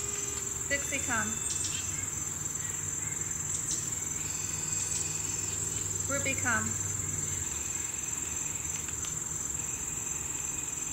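Steady high-pitched buzzing of an insect chorus, crickets or katydids, from the surrounding trees. A low hum runs under it and stops about three-quarters of the way in. Two short runs of falling chirps come about a second in and again just past the middle.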